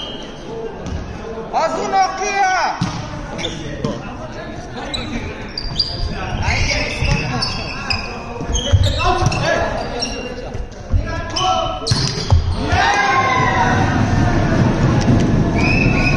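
Volleyball rally in a large gym hall: the ball is struck with sharp smacks several times while players shout. The shouting grows louder and steadier in the last few seconds as the point ends, and a referee's whistle sounds just before the end.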